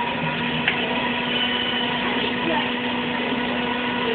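Air blower of a stuffed-animal bath station, switched on by its foot pedal, running steadily: an even whooshing rush with a constant hum.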